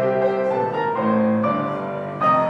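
Slow instrumental keyboard music, piano-like, playing sustained chords that change about every half second to a second.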